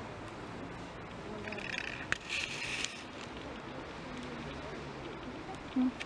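Outdoor background with faint, distant voices and a brief rustling hiss about two seconds in.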